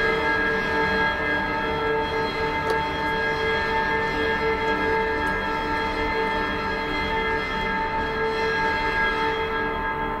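Background music: a slow, eerie drone of held bell-like tones at a steady level.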